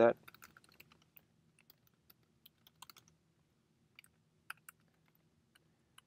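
Typing on a computer keyboard: a quick run of key clicks at first, then sparser keystrokes with a few louder ones.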